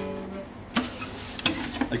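Acoustic guitar strings ringing out and fading as the guitar is lifted off its stand, followed by a few knocks from handling the instrument.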